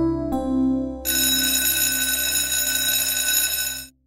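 Cartoon background music with piano notes. About a second in, an electric school bell starts ringing continuously over it, marking the end of the school day. The bell cuts off abruptly just before the end.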